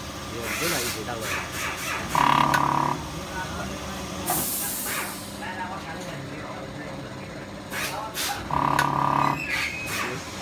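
Small automatic sachet packing machine running, its mechanism clicking, with two short steady buzzing tones about six seconds apart and a brief hiss between them.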